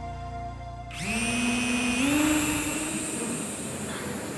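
Small single-wing drone's electric motor and spinning wing whining as it spins up, about a second in. Its pitch rises, steps higher about a second later, then holds steady over a rushing hiss.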